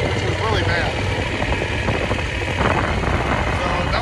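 Steady wind rush and low rumble from riding a Yamaha Super Ténéré motorcycle at road speed, picked up by a phone mounted behind the windshield.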